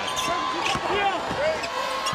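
Basketball being dribbled on a hardwood court, a few sharp bounces over the steady noise of an arena crowd.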